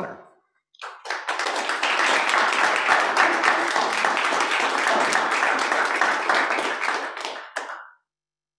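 Audience applauding: many hands clapping together, starting about a second in and dying away just before the end.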